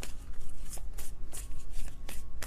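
A deck of tarot cards being shuffled by hand: a run of quick, irregular flicks.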